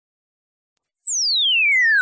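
Electronic intro sound effect: a single pure synthesized tone that starts just under a second in and glides steeply down from a very high pitch.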